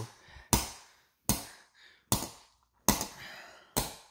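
A white plastic slotted spoon striking a plastic TV remote control: five sharp knocks, one a little under every second.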